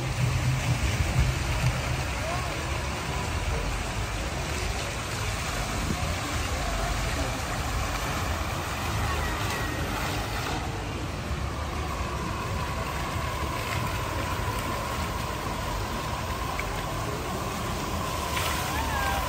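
Steady splashing of a plaza fountain's water jets falling into its pool, with a faint steady tone joining about eleven seconds in.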